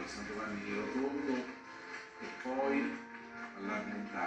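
Television broadcast sound from a TV set's speaker: music with long held notes, mixed with a voice.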